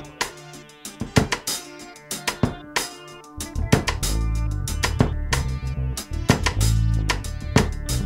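Instrumental intro of a rock band song: a drum kit beat with guitar. A deep bass line comes in about three and a half seconds in, and the music gets louder.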